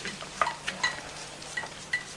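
Scattered light rustles and small clicks of paper sheets being handled and shifted on a floor, with a few brief faint squeaks.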